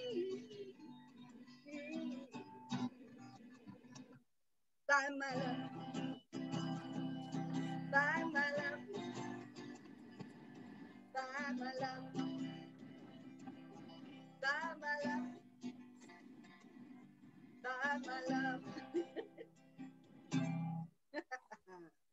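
A woman singing while playing an acoustic guitar, coming through a video call's audio. The sound drops out briefly a few times, which the listeners put down to a fault with the mic or its levels.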